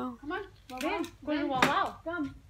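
Only a woman's voice: a few short, indistinct spoken sounds with gaps between them, and nothing else standing out.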